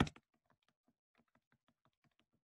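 Stylus tapping on a tablet screen as digital ink is erased: a loud cluster of clicks right at the start, then faint light clicks a few per second.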